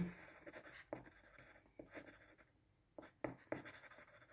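Pen writing on paper: faint, irregular scratching strokes with a few sharper ticks.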